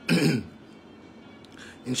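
A man clears his throat once, a short burst with a falling pitch, followed by a pause with only faint room tone.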